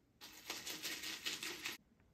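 Water poured from a plastic gallon jug into a plastic bucket, splashing with a quick run of glugs, then cut off suddenly near the end.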